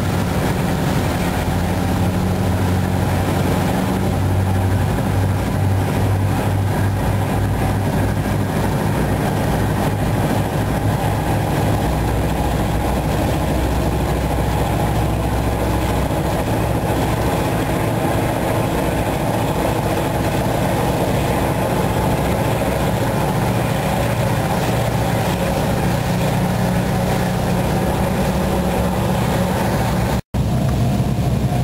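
A boat's engines running steadily under way, a low drone mixed with the rush of water from the churning wake.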